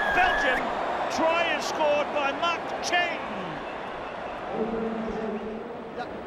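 Stadium crowd cheering and shouting just after a try is scored, with many voices rising and falling over a steady wash of crowd noise. The crowd settles somewhat after about three seconds, and a steady held note sounds briefly near the end.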